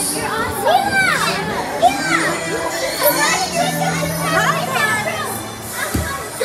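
Many children's voices shouting and calling out over one another as they play, a continuous busy hubbub with high, rising and falling calls.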